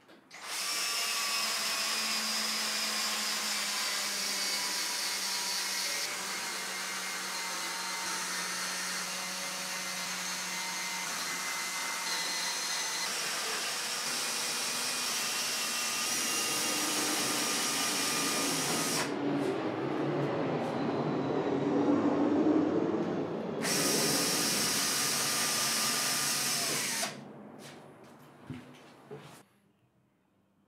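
DeWalt cordless drill with a countersink bit running steadily as it bores deep countersunk screw holes in plywood, its motor giving a steady whine. For a few seconds about two-thirds through, the high whine drops away and a lower, noisier sound is loudest before the whine returns. The drill stops shortly before the end.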